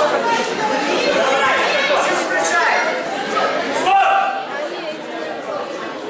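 Several voices chattering and calling out at once in a large hall, dropping somewhat from about four seconds in.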